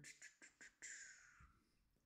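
Near silence with a few faint clicks in the first second, typical of computer mouse clicks.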